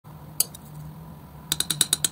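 Steel palette knife clicking against the hard painting surface as it scoops and spreads thick acrylic paint: one sharp click, then about a second later a quick run of about five clicks.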